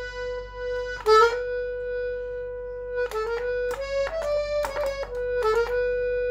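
Small Hohner piano accordion played slowly on its treble keys. One note is held, struck again about a second in and held for two more seconds, then a short run of notes steps up and back down before settling on the first note again.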